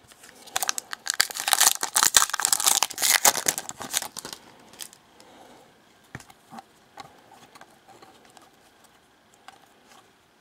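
A 2013 Panini Prizm trading-card pack wrapper being torn open and crinkled for about four seconds. Then quieter scattered clicks and slides as the cards are handled and flipped through.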